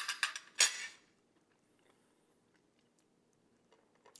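A few short clicks of a metal fork against a plate, with a brief burst of noise just after, all within the first second.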